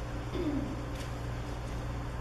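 A brief low voice-like sound falling in pitch, about half a second in, over a steady low room hum.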